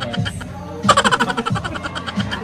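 A man laughing in quick, short pulses about a second in, over background music.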